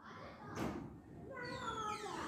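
A faint, short, high-pitched cry that falls in pitch, about one and a half seconds in, after a brief soft noise about half a second in.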